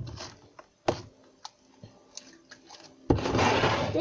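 Light handling noise on a tabletop, with a couple of faint taps, then a loud rustling scrape for about a second near the end.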